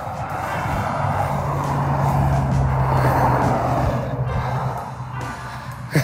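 A car passing by on the road, its tyre noise swelling to a peak about three seconds in and then fading, with a low steady engine hum underneath.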